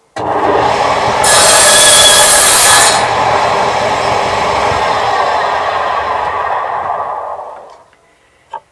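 Table saw switched on, its blade crosscutting a strip of scrap wood from about one to three seconds in, the loudest part. The saw then runs free and winds down, fading out near the end.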